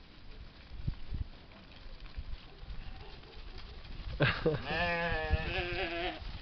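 Sheep bleating: one long, wavering bleat starts about four seconds in and lasts nearly two seconds.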